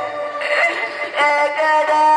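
Amplified live folk song: a singer holding long notes that slide and waver, with instrumental accompaniment.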